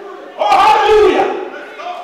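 A loud, shouted, chant-like voice preaching over the church's amplified sound. One strong phrase starts about half a second in and fades out.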